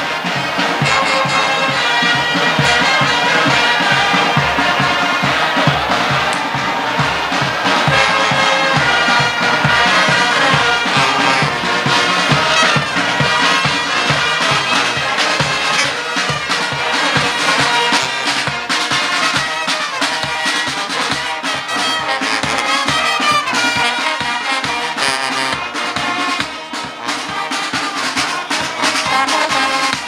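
Military brass band playing a march, with sousaphone and trumpets over a steady low drum beat.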